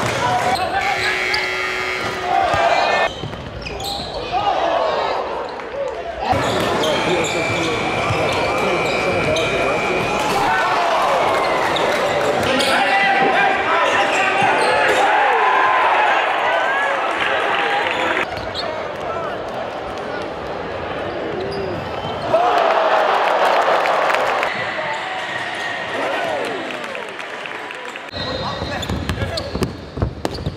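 Live gym sound from basketball games: a ball dribbling on a hardwood court among the voices of players and spectators in a large hall. The sound changes abruptly several times, and is loudest a little past the middle.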